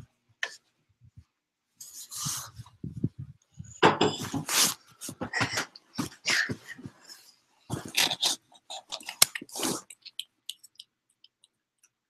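Handling noise on the camera's microphone: irregular rustling, brushing and bumps as the device is picked up and moved, from about two seconds in until about ten seconds in, with a sharp click near the end of it.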